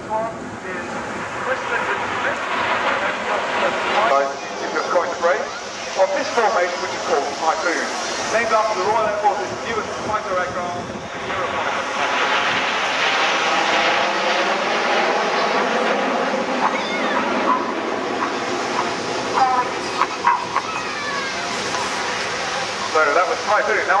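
Steady roar of the Red Arrows' BAE Hawk T1 jets flying over in formation, growing louder about halfway through, with people talking close by.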